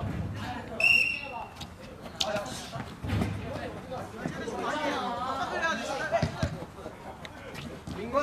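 Futsal players calling out to one another during play, with a short high whistle blast about a second in and a few thuds of the ball being kicked on the court.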